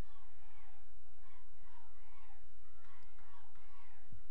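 Faint, distant voices calling out around a lacrosse field over a steady low hum.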